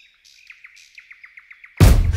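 A small songbird chirping in a quick run of short notes, about seven a second. Near the end, music starts abruptly with a heavy bass hit and is much louder than the bird.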